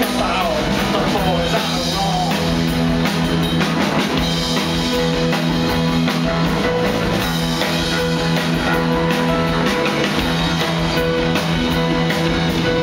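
Rock band playing live, loud and continuous: drums, electric guitar and bass guitar in an instrumental passage.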